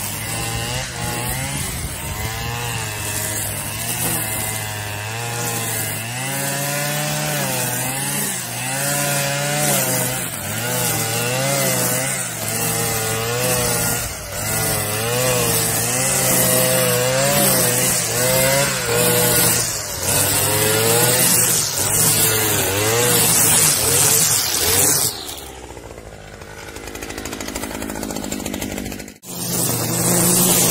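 STIHL two-stroke brush cutter with a metal blade running at high speed through long grass. Its engine note dips and recovers about once a second as the blade sweeps through the grass. Near the end the sound drops quieter for a few seconds.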